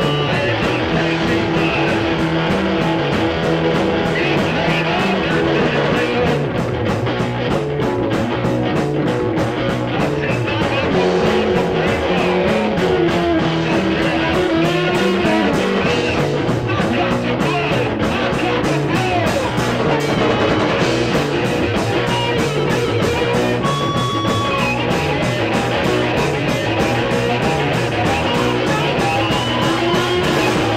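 Garage-rock song in an instrumental stretch without vocals: guitar playing bent notes over a repeating bass line and a steady drum beat.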